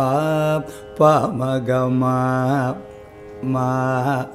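A man's voice singing short phrases in the Carnatic raga Surutti over a faint steady drone. There are three phrases of held notes; the middle one opens with a sweeping ornamental glide (gamaka) into a long steady note.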